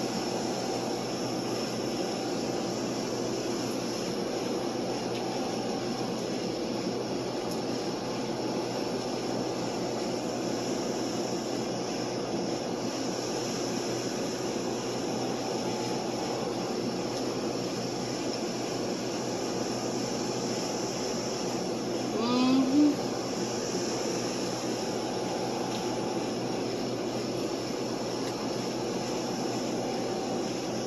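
Steady mechanical room hum and hiss, with a brief rising pitched sound about two-thirds of the way in that is the loudest moment.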